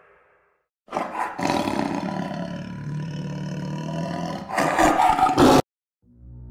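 A loud animal-like roar sound effect for an intro. It starts about a second in, swells louder near the end and cuts off suddenly.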